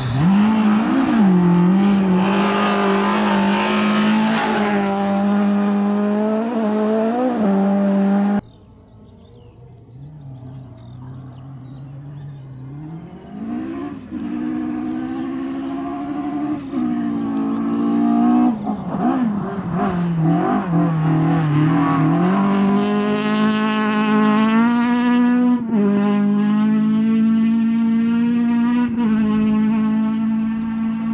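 Two front-wheel-drive hatchback rally cars, an Opel Corsa and then a VW Golf, driven flat out on a gravel stage, one after the other. The first car's engine revs up and down through gear changes and cuts off suddenly about a third of the way in. The second is heard coming from a distance, growing louder through several gear changes, and is held at high revs near the end.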